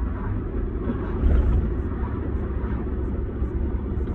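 Vehicle driving, heard inside the cabin, with a low rumble that swells about a second in. The driver hears a weird noise from underneath that sounds like a crowbar thrown into the suspension, and he ties it to the four-wheel drive having been disconnected.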